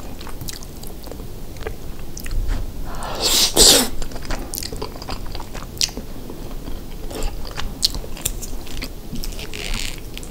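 Close-miked chewing of a soft, cheesy rice casserole, with many small wet mouth clicks and smacks. A louder, longer noisy burst comes about three seconds in.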